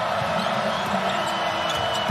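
Basketball game sound: the steady murmur of an arena crowd, with a basketball bouncing on the hardwood court.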